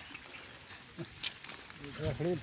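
Faint rustling and handling of wet, muddy weed stems on a plastic tarp as hands sort through them for fish, with a short vocal sound about a second in.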